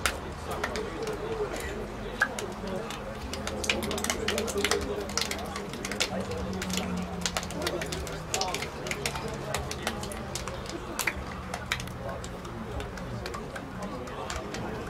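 Players' hands slapping together in quick, irregular sharp claps as the two teams greet each other along a line. Under them run indistinct distant voices and a steady low hum.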